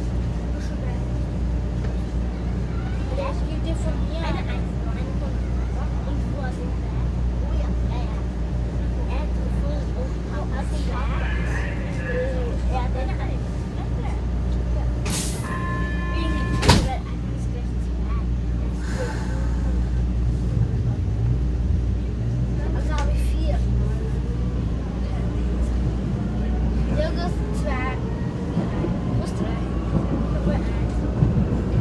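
Vienna U-Bahn train standing at a platform, with a steady low hum and voices around it. About sixteen seconds in, a short run of warning beeps sounds and the doors shut with a single loud thud. From about twenty-two seconds on, the train pulls away, its motor whine rising in pitch.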